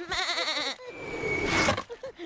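Cartoon sheep flock bleating together in one wavering 'baa' lasting under a second. About a second in comes a short noisy sound carrying a thin high tone.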